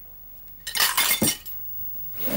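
Tableware on a laid tea table clinking and clattering in one short burst, starting a little over half a second in and lasting under a second.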